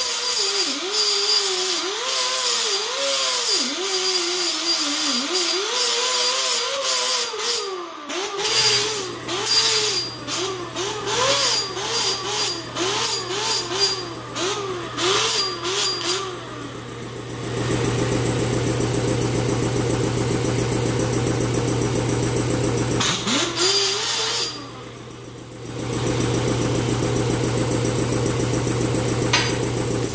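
Electric angle grinder grinding a notch into the end of a steel roll-cage tube, its motor pitch wavering and dipping as the disc bites into the metal. After about 17 seconds it settles into a steady run, drops away briefly around 24 seconds, then comes back up.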